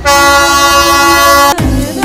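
A train horn sounds one loud, steady blast of several held tones, cut off abruptly about a second and a half in. It is followed by electronic dance music with a thumping beat.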